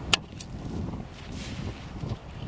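Two sharp knocks near the start, the first louder and the second fainter about a quarter second later, over a low rumble of wind on the microphone.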